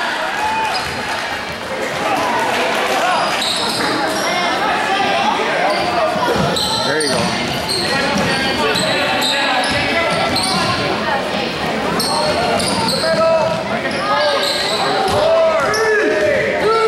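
A basketball bouncing on a hardwood gym floor, with many voices of players and spectators calling out over one another, echoing in the gym.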